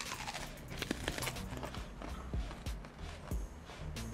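Crisp crunching and chewing of bites of raw white onion, a scatter of short sharp crackles, over quiet background music.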